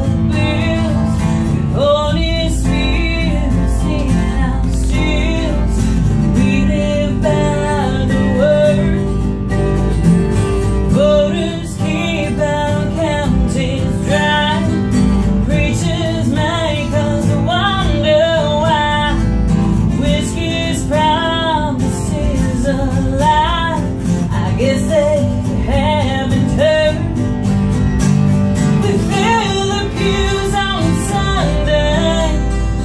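Acoustic guitar strummed while a woman sings a country song into a microphone, played live.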